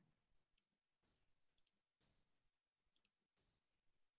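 Near silence, broken by a few faint, short clicks spread through it.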